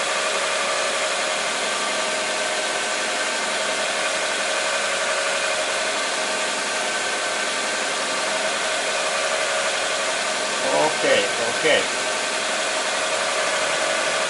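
Car engine idling steadily, heard from beneath the car: an even hum with a held tone.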